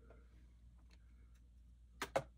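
Near silence: room tone with a steady low hum and a few faint, scattered ticks.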